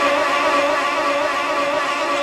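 A man's singing voice holding one long note with a steady vibrato, in a devotional chant style.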